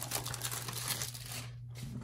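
Plastic shrink wrap being torn and crinkled off a trading-card blaster box by hand. It makes a dense run of crackles that thins out about a second and a half in.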